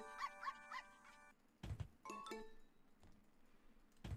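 Faint game sounds from The Dog House Megaways online slot: a short chiming jingle of quick rising notes, then a soft thud about halfway through and a few brief tones.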